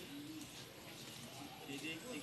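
Faint, low bird calls: a short held coo just after the start and a rising call near the end.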